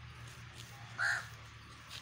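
A crow caws once, a single short call about a second in.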